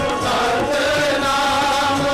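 Shabad Kirtan sung by a large chorus of men's voices in unison, long held notes sliding smoothly from one pitch to the next, with instrumental accompaniment underneath.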